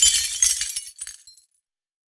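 The tail of a glass shattering: shards clinking and scattering as the crash dies away, ending about a second and a half in.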